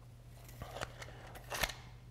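Quiet room tone with a low steady hum and a few faint, short clicks and ticks.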